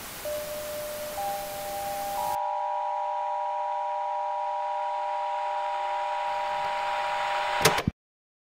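Television static hiss that cuts off abruptly about two seconds in, while three steady electronic tones enter one after another, each higher than the last, and hold together as a chord. A sharp glitch click near the end, then everything cuts off suddenly.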